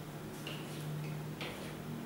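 Sharp clicks about once a second, over a low steady hum.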